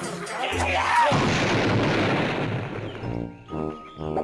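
Cartoon explosion sound effect: a short sliding whistle, then a loud blast about a second in that dies away over the next two seconds, with cartoon music running underneath and picking up again near the end.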